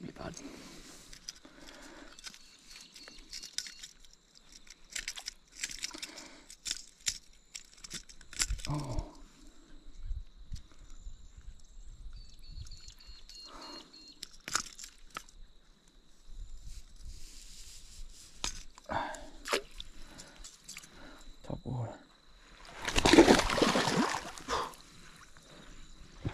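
Released Murray cod splashing away through shallow water, one loud burst of splashing near the end. Before it, only scattered small noises.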